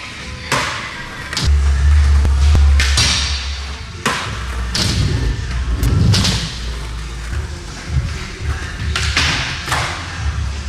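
Skateboard on a concrete floor: wheels rolling with a low rumble, and several sharp board impacts at uneven intervals, from pops and landings, with music playing.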